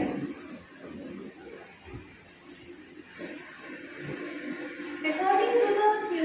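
Speech only: a woman talking at a lectern in a small room, softer through the middle and clearly louder again about five seconds in.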